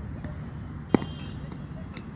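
A single sharp knock of a cricket bat striking a cricket ball, about a second in.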